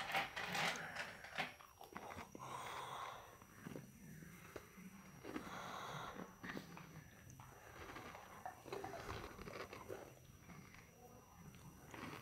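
Faint close-up chewing and breathing, with scattered small mouth clicks and a couple of soft breaths.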